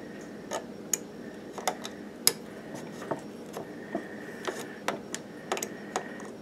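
Light handling clicks and taps, about a dozen at uneven spacing, over a faint steady hum.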